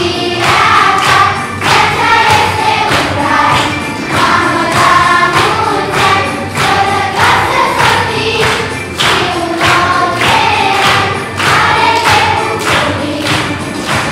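Children's choir singing a song together, with a steady beat in the accompaniment under the voices.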